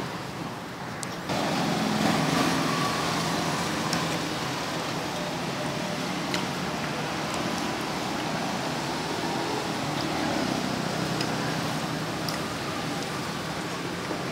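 Steady road-traffic noise with a low engine hum, stepping up suddenly about a second in and then holding steady.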